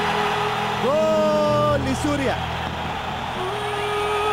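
Stadium sound at a goal: a dense crowd din with a steady droning tone. A long held shout rises and holds for about a second, starting about a second in, and a shorter one comes near the end.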